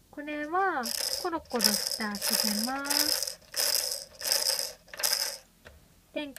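A baby's electronic activity toy playing its sounds: a brief pitched, voice-like phrase, then a run of about seven shaker-like rattling beats at an even pace.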